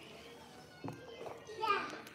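A young child's short, high-pitched vocal sound near the end, rising and falling in pitch, with a single thump about a second in.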